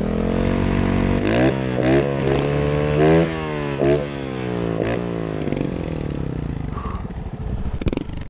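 Trials motorcycle engine at low revs, blipped with the throttle about five times in the first half, each blip a quick rise and fall in pitch, then running steadily at low revs.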